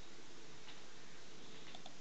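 Low, steady hiss of the remote call's audio line, with a few faint ticks.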